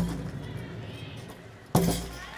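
A gymnast's feet landing on a balance beam: a thud at the start and a louder, sharper one near the end, each with a short low ring from the beam.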